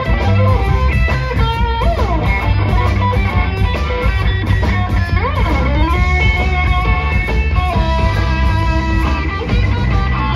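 Live blues band playing an instrumental passage: an electric guitar lead over drums and bass guitar, with notes bent up and down about two and five seconds in.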